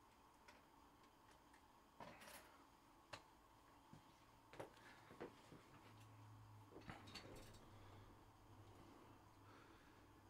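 Near silence with a few faint, short clicks and taps scattered through it, and a faint low hum starting about halfway.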